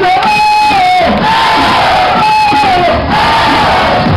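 Concert crowd chanting in unison over loud dance music: a long held note that steps down in pitch at its end, sung twice.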